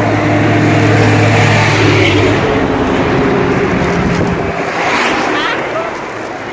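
Road traffic passing close by: a vehicle's low engine hum fades out after about two seconds, over a steady rush of traffic noise.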